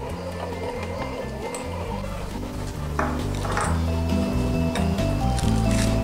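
Background music, with a few short knocks under it about halfway through.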